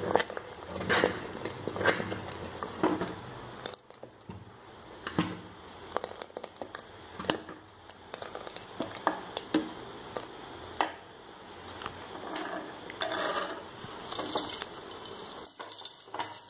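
Metal ladle stirring thick broken-wheat milk payasam in a metal pot, with sharp clinks and scrapes of the ladle against the pot every second or so.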